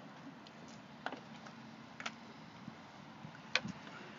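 Three faint, sharp clicks about a second apart over a low, steady outdoor background noise.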